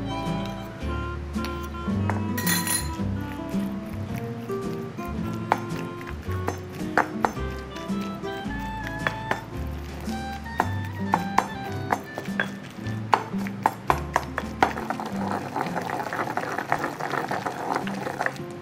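Background music with a stepping bass line. Over it, a stone pestle knocks and clinks against a granite mortar as century eggs are pounded into roasted green pepper paste. The knocks come scattered at first and grow thick and fast through the second half.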